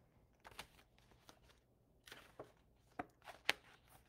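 Faint rustles and a few sharp clicks of a paperback picture book being handled as its page is turned.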